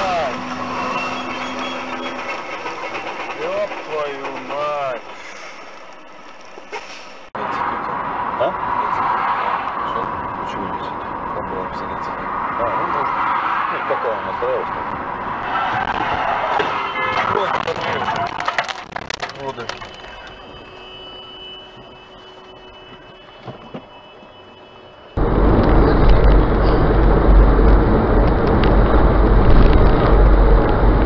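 Dash-cam audio from several clips in turn: voices and car noise inside a car's cabin, then a loud, steady low rumble of road, engine and wind noise in the last few seconds.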